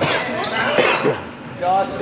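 A ball bouncing on a hardwood gym floor, with a sharp thud at the start, while players' voices call out in short bursts in the echoing hall.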